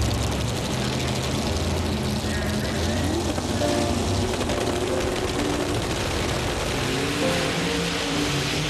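Background music mixed with Pro Mod drag racing engines at the starting line. Near the end the engines rise in pitch as the cars launch.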